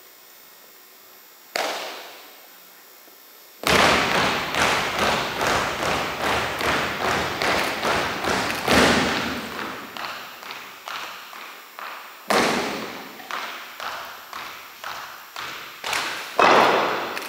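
Drill team's marching steps stamped in unison on a hardwood gym floor, ringing in the hall: one lone stamp, then after a pause a steady march of about two to three steps a second, with a harder stamp near the end.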